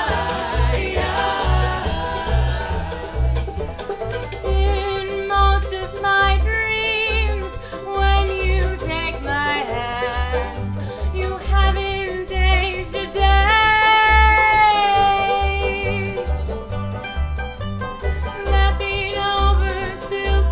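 Bluegrass band playing: banjo and mandolin picking over a double bass plucking a steady beat, with several voices singing together in harmony.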